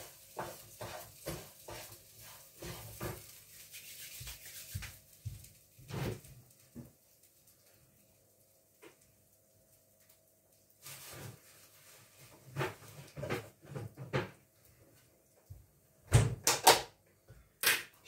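A metal spoon knocking and scraping in a granite frying pan, crushing a bouillon cube into the rice, a quick run of light clicks for the first six seconds. After a few seconds of quiet come scattered knocks, then several louder bangs near the end, like a cupboard or door.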